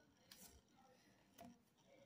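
Near silence, with two faint, brief rustles of a trading card being handled and turned over in the fingers, about a third of a second and a second and a half in.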